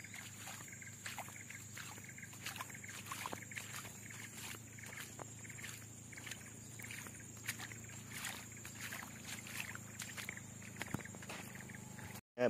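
Faint footsteps through wet mud and puddles on a dirt road, short irregular steps, with a steady high-pitched whine in the background.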